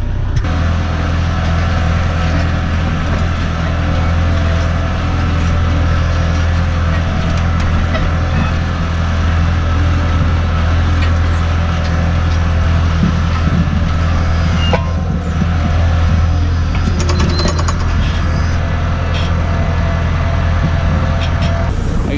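Tractor engine running steadily under load, with a strong, even low hum, as it pulls a mole plough through the ground to lay water pipe.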